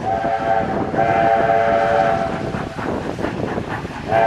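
Steam whistle of NSW C36 class locomotive 3642, a chord of several tones, sounded as a short blast and then a longer one of about a second, as a warning on approach to a level crossing.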